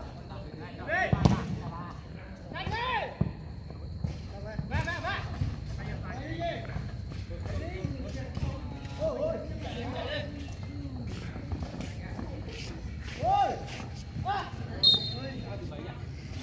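Footballers shouting to one another across the pitch, mixed with the sharp thuds of the ball being kicked, the loudest kick about a second in.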